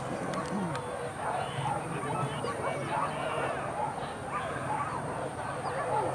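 A pack of hunting dogs barking and yelping continuously, several at once, at a distance: the dogs giving tongue while chasing a wild boar.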